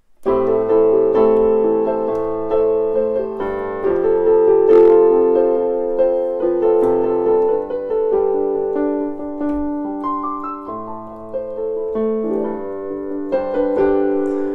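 Digital piano playing a flowing two-handed chord pattern: three chords with their notes doubled up and played in a different order, a steady stream of overlapping notes.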